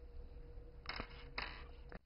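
Faint rattle of hard-shelled candies being handled in a glass bowl: two short rustling bursts, about one second and a second and a half in, with a small click.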